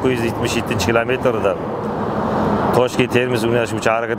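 Speech, with a pause of about a second in the middle, over a steady low background hum.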